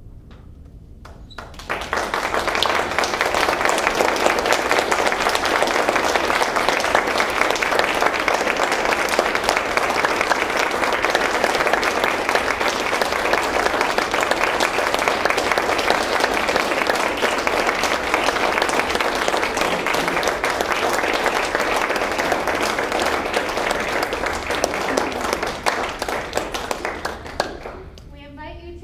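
Audience applauding, starting about two seconds in, holding steady for over twenty seconds and dying away near the end.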